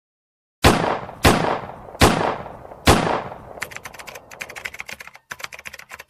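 Logo intro sound effect: four loud sharp hits well under a second apart, each with a long fading tail, then a quick irregular run of small clicks for about two and a half seconds.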